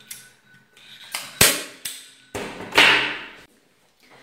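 Hand-held upholstery staple gun firing a staple into the seat's backing, a sharp clack about a second and a half in, with lighter clicks around it. A louder, longer rustling clatter follows a little before three seconds.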